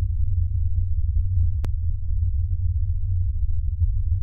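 A deep, steady bass drone with nothing above it, and a single sharp click about a second and a half in.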